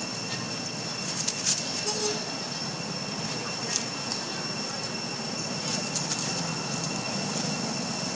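Steady outdoor background noise with a constant high-pitched whine, broken by a few brief crackles about a second and a half in, near four seconds and around six seconds.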